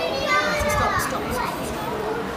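Young children's voices chattering and calling out, high-pitched, loudest in the first half.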